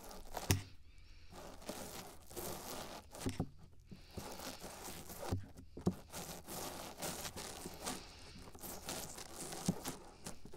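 A wet spoolie brushed and rubbed inside the silicone ear of a binaural microphone: close, crackly scratching and rustling, with a few sharp bumps where it knocks the ear.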